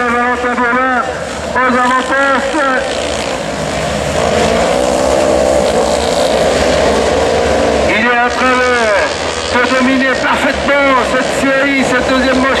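Autocross race car engines running on the dirt circuit, heaviest in the middle as the cars pass, with a distorted public-address announcer's voice from a loudspeaker at the start and again from about eight seconds on.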